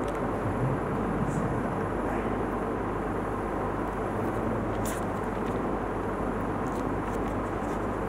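Steady background noise, an even hum and hiss picked up by a headset microphone, with a brief soft rustle about five seconds in.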